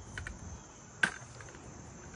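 A steady, high-pitched trilling of crickets. There are a few faint clicks near the start, then a single sharp knock about a second in.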